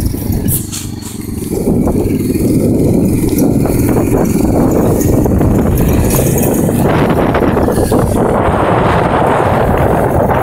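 Quad (ATV) engine running as it is ridden under throttle. The sound is steady, with a brief drop in level about a second in.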